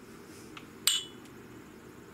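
A small ceramic prep bowl clinking once, a sharp light clink with a short ring, about a second in.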